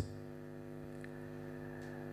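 Steady electrical mains hum: a low buzz made of evenly spaced steady tones, with a faint click about a second in.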